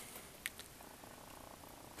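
Quiet room tone with a single faint click about half a second in.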